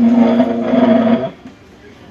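A person's voice holding one loud, steady drawn-out note, like a long exclaimed "ohh". It stops about a second and a quarter in, leaving quieter room sound.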